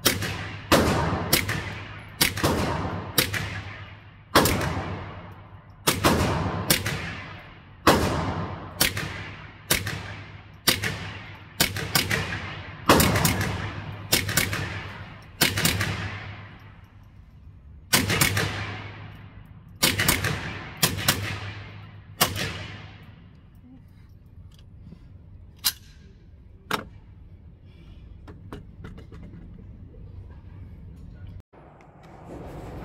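AR-15-style rifle with a CMMG .22LR conversion kit firing about twenty semi-automatic shots of .22LR, roughly one a second with a brief pause partway through. Each shot has a long echoing tail from the indoor range. Near the end there are two fainter cracks.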